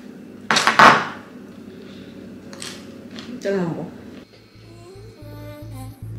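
A brief loud clatter about half a second in, then quieter kitchen handling noises. Background music with a steady low beat comes in after about four seconds.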